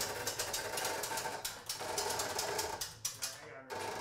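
Hand-cranked panel lift being wound up, its winch ratchet clicking rapidly and steadily as it raises a heavy ceiling panel, with a short break near the end.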